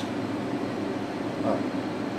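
Steady whir of equipment cooling fans in a battery charging and test room, with a faint short "uh" about one and a half seconds in.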